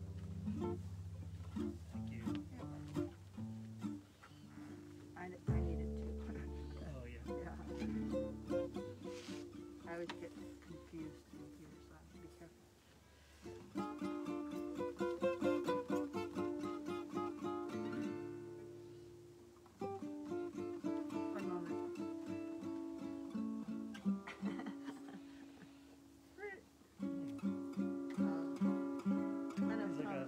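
Acoustic jazz trio of two acoustic guitars and an upright double bass playing a bossa nova tune: a picked guitar melody over strummed chords and plucked bass notes, in phrases a few seconds long.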